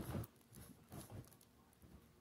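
Faint scratching and tapping of fingers working at the lid of a metal cookie tin, a few small sounds in otherwise near quiet.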